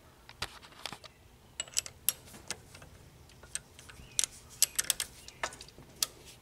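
Sharp, irregular metal clicks and clinks from hand work at a metal lathe, as a part is set up in the lathe's three-jaw chuck; a dozen or so separate taps, the loudest about two seconds in and around four to five seconds in.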